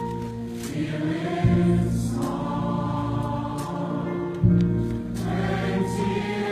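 Large mixed choir of men's and women's voices singing slow, sustained chords, with fresh chords coming in about one and a half and four and a half seconds in.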